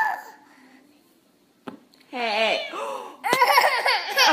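A toddler girl crying out in two high-pitched bursts, the first about two seconds in and the second higher and near the end.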